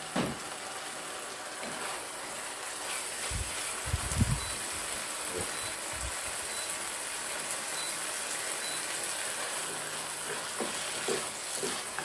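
Minced meat and pumpkin frying in oil in a pan, a steady sizzling hiss as they are stirred with a spatula. A few dull low thumps come near the middle.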